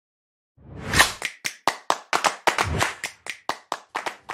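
A short rising swell of noise, then a quick run of sharp hand claps, about five a second.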